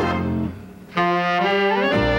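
A big dance band with saxophones and brass playing a Latin-beat number. About half a second in the band breaks off briefly, then comes back on a held chord with a rising run in the upper parts that leads into the full band again.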